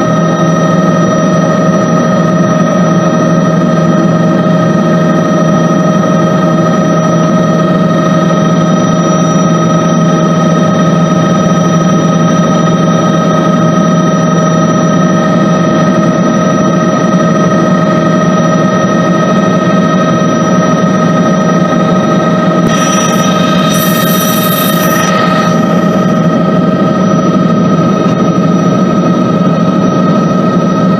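Inside-cabin noise of a Bell 206 JetRanger in flight: the steady whine of its Allison 250 turboshaft engine and rotor drive, several steady tones over a loud, even noise. About three-quarters of the way through, a hiss rises over it for two to three seconds.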